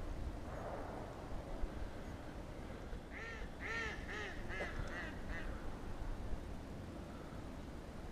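A quick series of about seven short calls from distant ducks or geese over the water, a little past three seconds in. Over faint steady background noise there are one or two faint, brief reports of distant shotgun fire.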